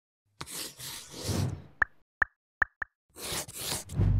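Sound effects for a title animation: a whoosh, four quick plops, then a second whoosh near the end.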